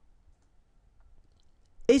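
Near silence with a faint click, then a man begins speaking a French word near the end.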